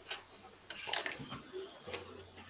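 Book pages being leafed through close to the microphone: a few short clicks and rustles, busiest in the middle.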